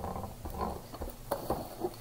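Plastic wrap on an RC buggy's body rustling as the car is handled, with a few light clicks.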